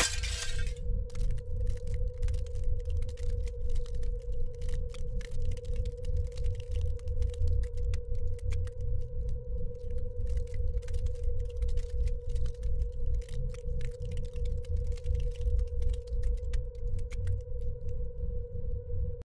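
Glass shattering at the start, then a dark sound-design drone: one steady hum over a low rumble that flickers in level, with scattered crackles.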